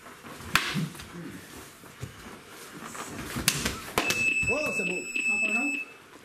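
Sharp crack of a fighting stick striking, about half a second in, and two more knocks a few seconds later. Then a steady high electronic beep from a round timer holds for about two seconds, signalling the end of the round.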